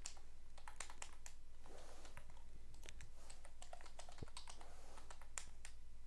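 Typing on a computer keyboard: a quick, irregular run of faint key clicks over a low steady hum.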